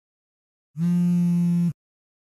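A smartphone vibrating against a glass tabletop for an incoming call: one steady buzz about a second long, starting just under a second in.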